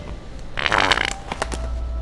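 Fake wet fart from a Sharter fart toy: one loud, sputtering burst about half a second long, followed by a couple of small clicks.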